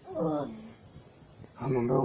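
A person's voice making wordless sounds: a short cry that falls steeply in pitch at the start, then a held low vocal sound starting near the end.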